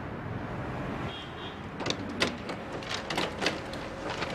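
Photocopier running over a steady hum, with a brief high beep about a second in. From about two seconds in there is a series of sharp mechanical clicks and clacks as pages feed through and drop into the output tray.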